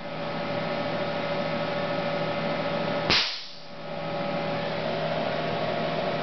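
Homemade 20 kV high-voltage spark generator: a steady electrical hum while it charges, broken about three seconds in by one sharp crack as a spark jumps between two brass rods. After the crack the hum dips and builds back up.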